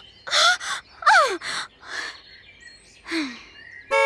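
A woman's voice making a series of short, breathy gasps and grunts of effort. A few of them are quick cries that fall sharply in pitch.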